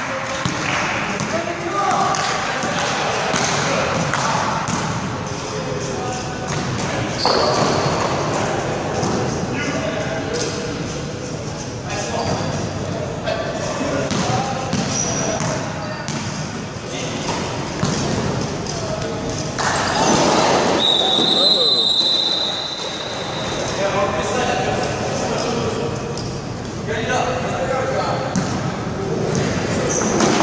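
A basketball bouncing on the wooden floor of a sports hall, with players calling and shouting across the court, the hall echoing. About two-thirds of the way through, a referee's whistle sounds once, a steady high note lasting a second or so.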